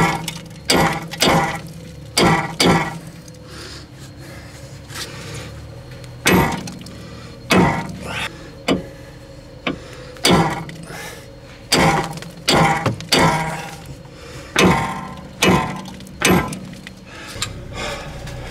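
Small sledgehammer striking the rusted steel front suspension arm and bolt of a Mercedes-Benz W211, about twenty sharp metallic blows that ring after each hit. The blows come in irregular runs of two to four, with a pause of a few seconds after the first ones. It is an attempt to knock a seized joint loose.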